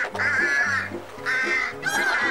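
Cartoon bird squawking sound effect, a few wavering calls in quick succession over light background music.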